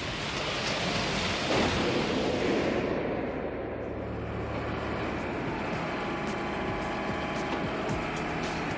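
Water churning and splashing as a dredger's bucket breaks the surface, fading out after about three seconds. Background music with long held tones carries on through the rest.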